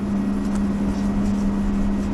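Steady machine hum with one constant low tone, under the faint rasp of wet sandpaper rubbed by hand over a plastic headlight lens.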